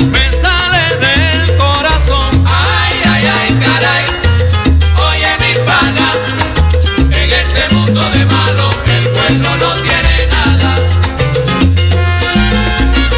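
A recorded salsa track playing: a bass line stepping between notes, with steady percussion strokes and wavering melodic lines above.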